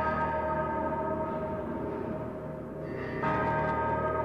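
A deep, bell-like struck tone from the dance soundtrack, left ringing, with a second strike a little after three seconds in.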